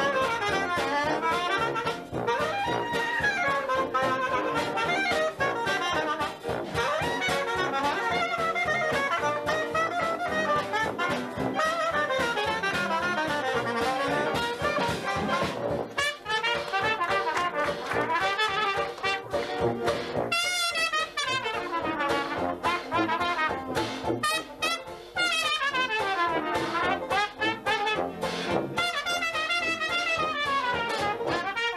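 Traditional jazz band playing an instrumental chorus: soprano saxophone leads at first, then trombone and cornet come to the fore, over a steady beat from banjo, sousaphone, piano and drums.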